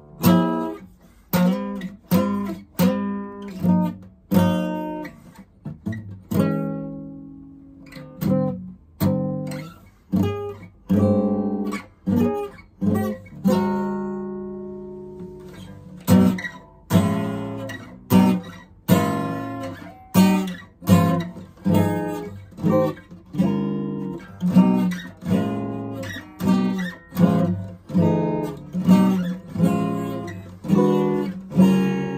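Marley acoustic guitar strummed in chords, one stroke about every second, each chord ringing out and fading. Midway one chord is left to ring and die away for several seconds before the strumming picks up again.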